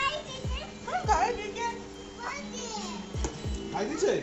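Children calling out and chattering over a steady electronic tune of held notes, with a few short low thuds.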